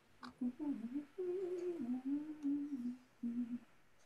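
A woman humming a slow, wordless prayer tune (a niggun) in a few short phrases that rise and fall, stopping a little before the end.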